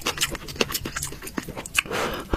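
Close-miked eating sounds: a person biting and chewing a saucy piece of meat, with wet mouth clicks and smacks coming irregularly, several a second.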